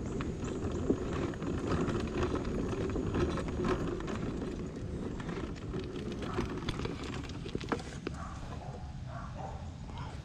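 Electric mobility scooter rolling along a rough asphalt street: a steady rumble of motor and tyres, with frequent small clicks and rattles from the scooter and its load.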